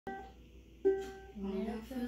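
Ukulele strummed once at the start and again just under a second in, each chord ringing and fading. Near the end a girl's voice starts singing over it.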